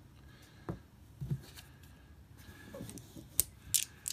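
Quiet handling noises of game cards and pieces on a tabletop: a soft knock under a second in, then two sharp clicks about three and a half seconds in.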